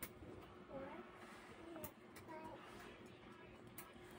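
Near silence: faint room tone with a steady low hum and faint far-off voices, broken by a few light clicks of multimeter probes touching the graphics card's edge-connector pins.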